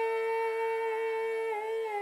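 A singing voice holding one long hummed note, steady at first, then wavering and dipping slightly in pitch near the end.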